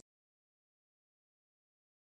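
Silence: the sound track drops out completely, with not even room tone.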